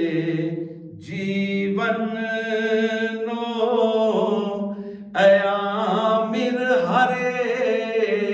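A man singing a devotional Gujarati manqabat solo, drawing out long, ornamented notes that bend in pitch. The voice dips briefly about a second in, then breaks off and comes back strongly on a new phrase about five seconds in.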